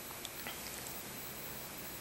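Steady background hiss of an old video recording, with a couple of faint short clicks about a quarter and half a second in.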